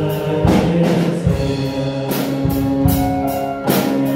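Male voices singing a hymn in Hmong over a musical accompaniment with a drum beat and sustained chords.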